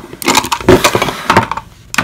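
Lipsticks clattering and clicking against each other in a cup as they are handled close to the microphone, a dense run of knocks for about a second and a half, then quieter.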